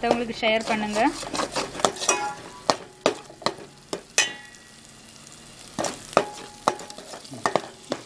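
A spoon scraping and knocking against a stainless steel pot while stirring curry-leaf paste frying in oil, with a soft sizzle between the strokes. About four seconds in there is a brief metallic ring.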